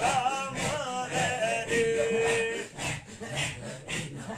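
A male voice singing a Sufi ilahi with a wavering, ornamented melody, ending on a long held note a little past halfway. Behind it, a group of men keep up a rhythmic breathy zikr chant, which is all that remains near the end.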